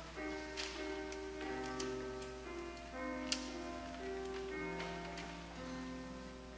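Organ playing slow, held chords as the recessional music at the end of Mass, with a few faint clicks and one sharp tick a little past the middle.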